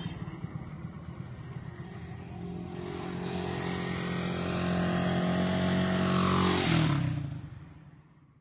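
Yamaha Sniper 150 underbone motorcycle's single-cylinder four-stroke engine approaching at steady throttle, growing louder, then passing close by with a drop in pitch about seven seconds in and fading away.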